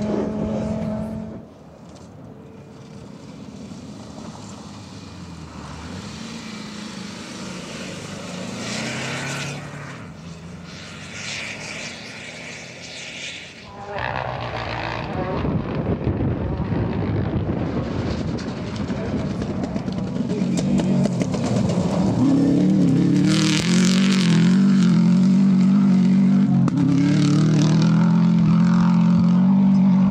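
Rally cars at speed on a gravel stage. At first one car's engine cuts off and a quieter, more distant car is heard with surges of revs. Then a rally car comes hard down a dirt track, its engine climbing through the gears and growing loudest near the end as it passes close by.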